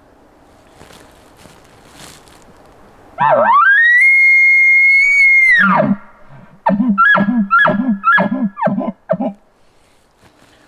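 Elk challenge bugle imitating an aggressive bull elk, blown on a mouth diaphragm call through a bugle tube: a loud whistle that climbs, holds high for about two and a half seconds and drops off. A quick run of short, low grunting chuckles follows.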